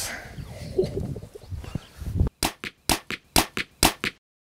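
A man's short laugh, then a rapid run of sharp clicks in the second half, with moments of dead silence between them.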